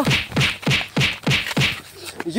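A quick series of about six hand blows, roughly three a second, striking a crouching man's back and head.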